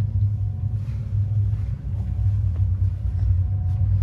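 Steady low machinery hum with a faint high tone that comes and goes.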